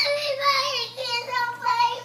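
A young child's high-pitched voice, held in long wavering tones without clear words.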